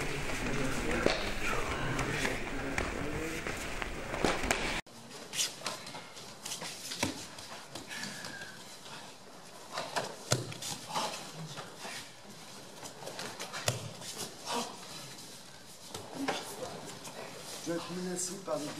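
Indistinct overlapping voices and movement of a group practising karate on mats. About five seconds in the sound drops sharply to a quieter room with scattered short slaps and thumps of bodies, hands and feet, and a few brief voice fragments.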